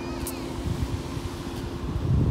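Low rumbling of wind and handling on a phone microphone while walking, growing louder after about half a second, over a steady low electrical-sounding hum.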